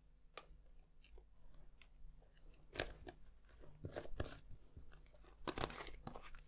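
Plastic glitter pots handled and their screw lids turned: a series of faint crunchy scrapes and clicks, loudest about three seconds in, around four seconds, and again near the end.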